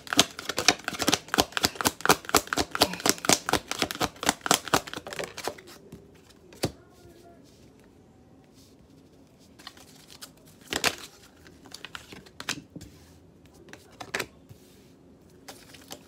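A deck of tarot cards being shuffled by hand: a quick, dense patter of card edges for about five seconds, then a few separate clicks as single cards are laid down on a table.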